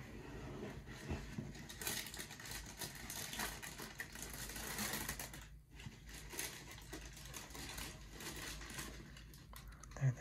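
Tissue paper in a shoe box crinkling and rustling as it is folded back by hand, busiest in the first half, with a brief pause about halfway through.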